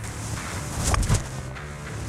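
A driver striking a golf ball off the tee about a second in, a single sharp crack over background music with a steady low beat.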